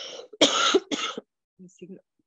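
A woman coughing twice into her fist: two short coughs about half a second apart.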